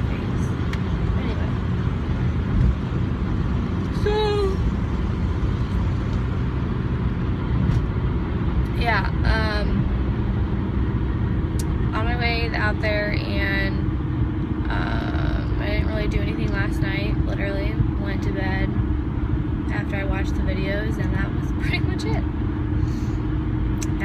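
Steady road and engine noise inside a car driving at highway speed. A voice comes and goes over it from about four seconds in, in places with drawn-out gliding notes.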